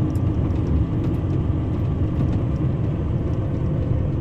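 Steady low rumble of a Scania 113 truck's diesel engine and tyre noise, heard inside the cab while driving.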